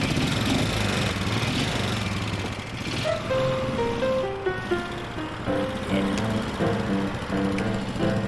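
Simson AWO 425 motorcycle's single-cylinder four-stroke engine running after a kick start and pulling away with a sidecar. From about three seconds in, music plays over the engine.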